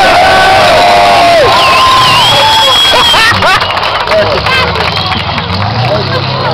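The tail of a burnout by a Valiant VG hardtop with a stroker small-block V8: loud tyre and engine noise with gliding squeals that cuts off about three seconds in. A crowd cheers and shouts over it, and the engine then runs low and steady near the end.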